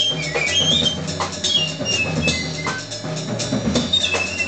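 Jazz trio playing: a piccolo runs quick rising and falling phrases high up, over double bass and a drum kit with cymbal strikes.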